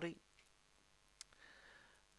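A single sharp click from the computer keyboard or mouse about a second in, over quiet room tone.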